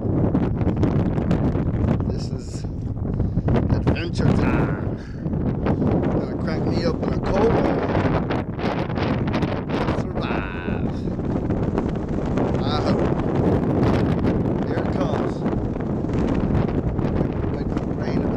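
Strong wind buffeting the microphone, a steady low rumble. Short high bird calls break through it every few seconds.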